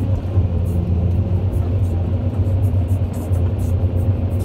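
Caterpillar hydraulic excavator's diesel engine running steadily, heard from inside the cab as a continuous low drone while the boom swings.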